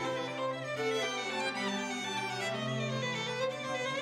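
A string quartet of two violins, viola and cello playing a slow passage of sustained bowed notes over a held low cello note.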